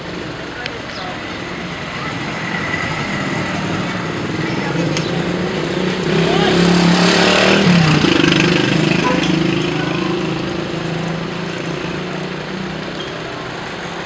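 A motor vehicle passing close by on the street. Its engine grows louder, peaks about halfway through with a drop in pitch as it goes past, then fades back into the street noise.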